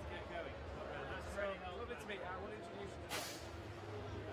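The CO2 gas cartridges of two F1 in Schools model race cars being pierced at the launch, a short sharp hiss of gas about three seconds in, over crowd chatter.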